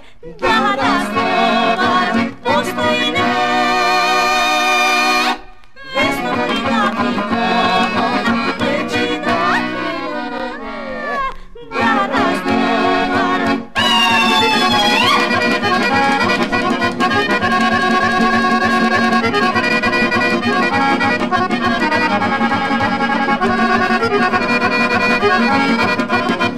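Instrumental passage of a Macedonian folk song, led by accordion, with a few short breaks in the first half and then playing on without a break.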